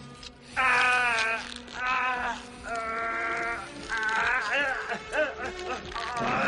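A man's strained, drawn-out cries of pain, four in a row, as he pulls a tracking device out through his nostril, with tense film-score music underneath.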